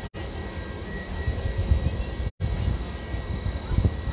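Outdoor rumble of wind buffeting a phone microphone in irregular low gusts, with a faint steady high whine underneath. The sound cuts out completely for an instant twice.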